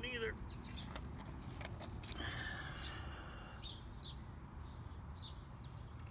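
Faint chirps of small birds, a few short calls in the second half, over a low steady background rumble.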